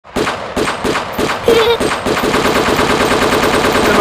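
Gunfire from many guns at once: separate shots over the first couple of seconds, then sustained rapid automatic fire.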